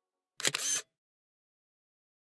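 Camera shutter sound effect: a single short snap with a sharp click, about half a second in, as a photo is taken.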